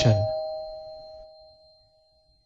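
A single bell chime sound effect ringing out and fading away over about a second and a half.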